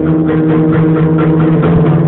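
Acoustic-electric guitar being strummed in a steady rhythm, chords ringing with low notes held underneath, as part of a free improvisation.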